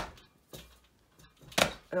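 Two sharp knocks about a second and a half apart, the second louder, with near quiet between: the hanging weights of a double-bed knitting machine being handled and knocked as they are lifted off the knitting.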